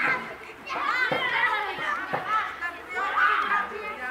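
Children playing: many young voices calling out and talking over one another at once, with no clear words.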